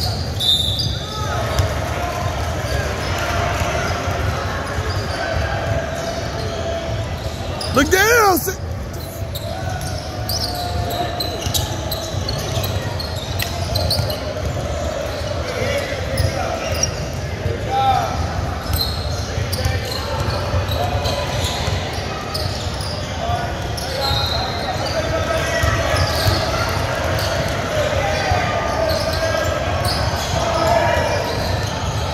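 Basketball game on a hardwood court in a large, echoing gym: the ball bouncing, with players' and onlookers' voices throughout. One sharp squeal stands out about eight seconds in.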